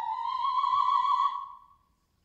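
Operatic soprano voice singing unaccompanied, sliding upward into a held high note that fades away about a second and a half in.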